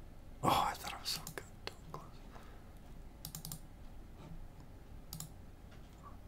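Computer keyboard and mouse clicks while browsing folders: a few separate clicks, a quick run of them about three seconds in, and one more near the end. A short breathy whisper comes about half a second in.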